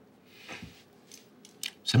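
Quiet pause in dialogue with a soft hiss and a few faint small clicks, then a man's voice starts near the end.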